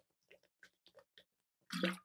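Two people gulping water from plastic bottles: faint swallowing and gulping sounds about three a second, with a louder sound near the end.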